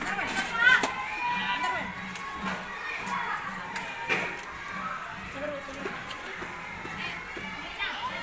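Several children's voices chattering and calling out indistinctly, overlapping, with no single clear word.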